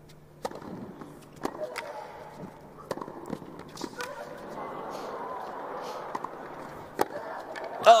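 Tennis rally: a string of sharp racket-on-ball strikes, roughly one to one and a half seconds apart, with players grunting on some shots. A low crowd hum builds in the second half, and the loudest strike comes about a second before the end.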